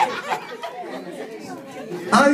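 Low chatter of several people talking at once in a hall.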